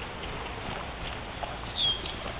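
Horse walking on soft dirt arena footing, its hoofbeats faint and muffled. A short high squeak near the end.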